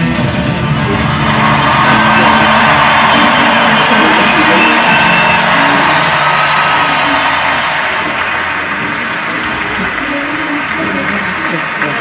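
Recorded concert audience cheering and whooping over the closing sounds of a pop band's song, played back from a video screen's speakers. The cheering is strongest in the first half and fades toward the end.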